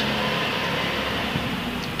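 Steady background noise, an even hiss with a faint low hum, holding at one level with nothing sudden in it.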